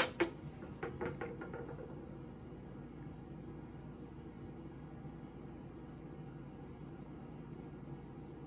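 Two sharp clicks at the start, then a few lighter taps about a second in, as small objects are handled. After that only a steady faint low hum.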